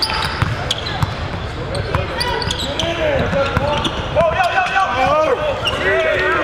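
Live indoor basketball play: a ball dribbled on a hardwood court and sneakers squeaking in quick, overlapping short chirps, over a steady murmur of crowd voices in a large gym.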